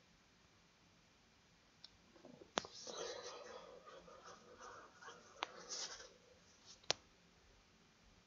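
Faint, indistinct murmur like a low voice or whisper, with three sharp clicks about two and a half, five and a half, and seven seconds in. The first two seconds are near silence.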